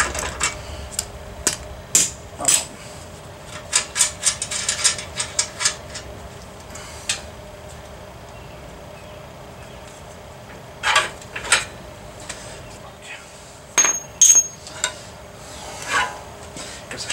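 Metal clinks, taps and rattles of steel suspension parts and hand tools being handled as a control arm and ball-joint mock-up is taken apart: a quick run of small clicks in the first few seconds, a quiet stretch, then a few sharper knocks near the end, one with a brief metallic ring.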